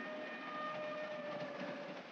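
Moving passenger train heard from inside the dining car: a steady running noise with a faint held tone over it that fades out near the end.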